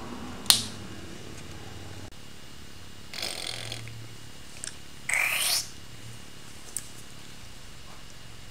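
A single sharp snip of wire cutters cutting through galvanized wire mesh (hardware cloth), followed a few seconds later by two short scraping, rustling noises as the mesh and a wooden yardstick are handled on the work table. The audio is sped up to double speed.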